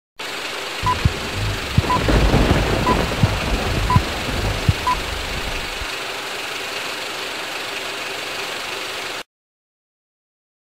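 Edited title-sequence soundtrack: five short, even beeps about a second apart over a steady hiss, with low rumble and a few sharp thumps under the first half. The rumble fades after about six seconds, leaving the hiss until the sound cuts off suddenly near the end.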